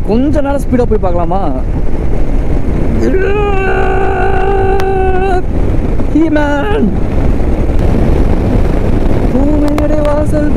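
A man's voice singing long held notes, sliding in pitch at first, over a steady rush of wind and road noise from a moving motorcycle.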